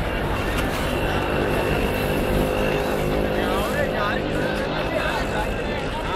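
Crowd voices over a steadily running vehicle engine, with a steady high-pitched tone running alongside.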